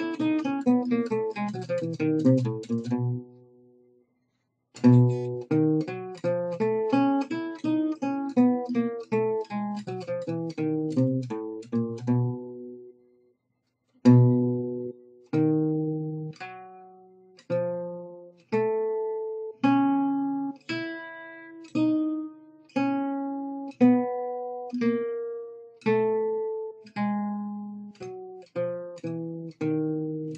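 Oval-soundhole, Selmer-style gypsy jazz guitar played solo with a pick: two fast single-note runs in jazz manouche style, each ending on a held note with a brief silence after it. From about halfway in, a slower phrase of separate ringing notes, about one a second.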